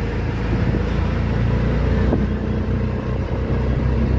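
Steady low engine drone and road noise from inside a moving CNG auto-rickshaw.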